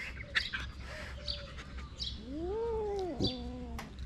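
A kitten gives one drawn-out meow that rises and falls in pitch, starting about two seconds in, with faint short bird chirps in the background.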